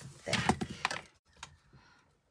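A pencil tossed down onto a desk, giving a brief clatter of light knocks a little under a second in, followed by faint handling noise.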